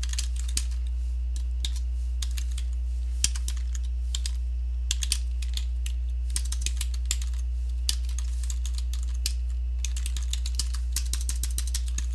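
Computer keyboard being typed on: irregular runs of keystrokes with short pauses between them, over a steady low hum.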